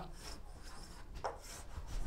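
Chalk rubbing and scratching on a chalkboard as lines are drawn, faint.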